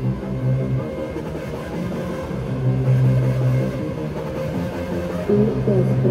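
Electronic dance music from a DJ set, played loud through a club sound system, heavy in the low end. A deep bass note sounds for about a second at a time, three times over.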